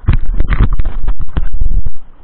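Loud, clipped buffeting and knocking on a fishing-rod-mounted camera's microphone as the rod is swung hard over the surf. The noise is an irregular jumble of thuds and rushes that stops abruptly.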